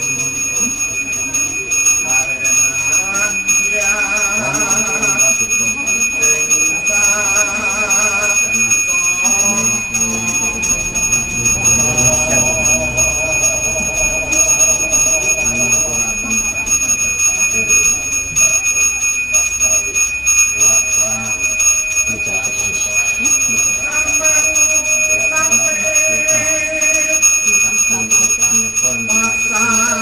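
A Hindu priest's hand bell (genta) rung without pause, a steady high ringing, with a voice chanting melodic prayers over it in phrases that come and go.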